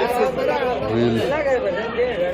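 Speech only: people talking over one another in background chatter, no other sound standing out.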